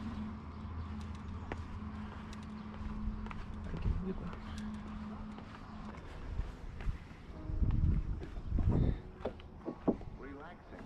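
Footsteps going down concrete steps and out over loose shoreline rock, with scattered knocks. A steady low hum runs under the first part and stops a little past halfway. Heavier low rumbles come near the end.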